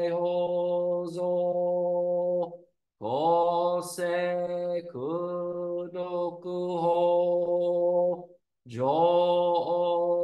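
A man chanting a Japanese Buddhist sutra in a steady monotone, drawing each syllable out into a long held note. The chant stops twice briefly, about a third of the way in and again past the middle.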